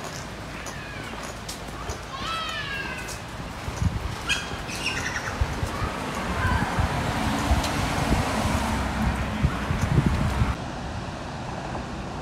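Birds calling in street trees, a few short sweeping chirps and calls. In the second half a rushing noise with low bumps swells and then cuts off suddenly.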